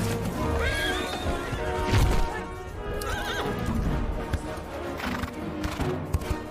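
A horse whinnying twice, once about a second in and again around three seconds, over film-score music, with a heavy thud near two seconds.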